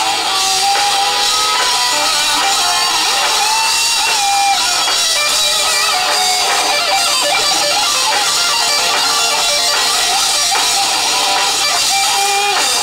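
Live rock band playing loud and steady: an electric guitar carries a melodic line with bending notes over drums and a second guitar.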